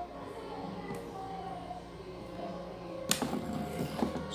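Background music with sustained tones playing, and one sharp knock about three seconds in, from the popsicle-stick model being handled.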